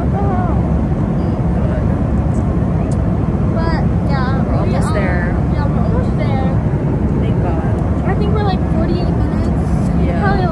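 Steady, loud low rumble of airliner cabin noise, with faint voices over it in the middle and near the end.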